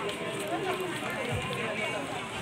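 Indistinct voices of people talking around the microphone in a busy outdoor market, with no clear words.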